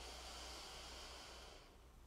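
A person's long, slow deep breath in through the mic, a soft hiss about two seconds long that fades near the end.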